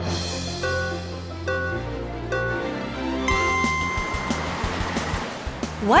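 Cartoon background music over a low steady drone, with three short beeps about a second apart and then a longer, higher beep about three seconds in: a start countdown for a simulated driving test. A rushing noise follows the long beep.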